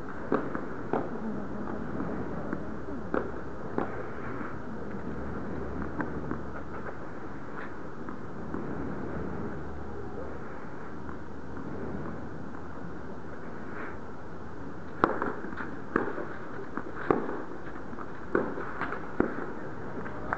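Steady hum of an indoor tennis arena with scattered sharp taps, then, about fifteen seconds in, a run of louder sharp knocks a half-second or so apart: a tennis ball being struck by rackets and bouncing on the clay court.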